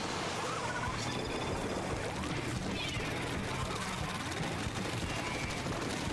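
Video game audio: steady, fairly quiet shooter-game weapon fire and effects mixed with game music.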